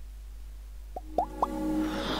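Start of an outro jingle: over a faint low hum, three quick rising blips come about a second in, then held synth tones and a swelling rush build toward the music.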